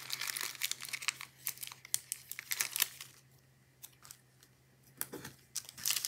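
Paper planner stickers being peeled from their backing sheet and handled: quick small crackles and crinkles of paper for about three seconds, a short lull, then a few more crackles near the end.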